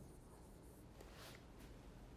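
Faint scratching of a pen stylus on a touchscreen display as characters are handwritten in a few short strokes, over near-silent room tone.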